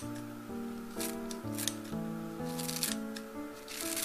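Kitchen scissors snipping garlic chives, about five crisp cuts, some in quick pairs, over light background music with a simple melody.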